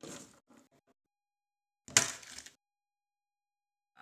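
A raw egg breaking: one sharp crack about two seconds in as the shell smashes, after a few short, soft noises.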